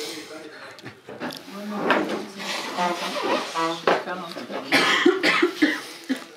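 Indistinct voices talking in a small room, with a few short harsh coughs about five seconds in.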